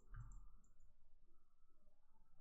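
Near silence, with a few faint computer mouse clicks in the first second.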